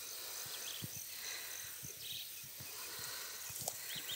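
Faint ambient insect chirping: a steady, evenly pulsing high-pitched chirp, with three short, lower chirps spaced through it and a few faint low taps.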